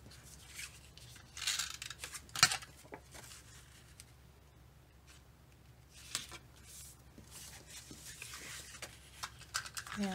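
Cardstock being handled and slid together: short papery rustles and swishes, with one sharp tap about two and a half seconds in.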